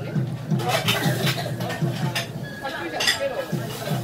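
Restaurant background of other people's voices talking, with a few sharp clinks of dishes and cutlery.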